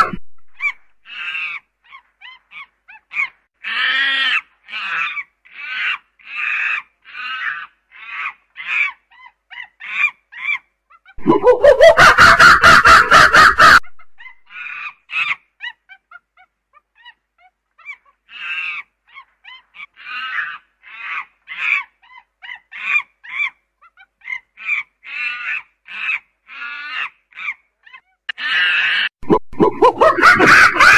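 Primate calls: a series of short calls about two a second, broken about 11 seconds in by a few seconds of loud, unbroken calling. The series then starts up again, and the loud calling returns near the end.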